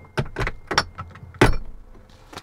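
Latch and handle of a small teardrop trailer's entry door being worked from inside: a run of clicks and knocks, the loudest about one and a half seconds in.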